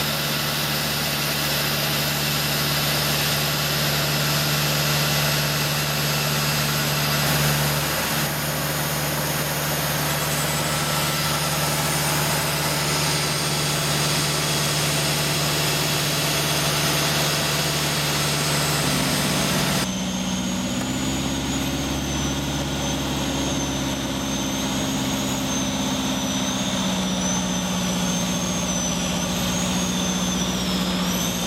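Van's RV-6 light aircraft's piston engine and propeller heard from inside the cockpit, running steadily. About two-thirds of the way through the engine note shifts abruptly to a different, slightly higher pitch that wavers a little.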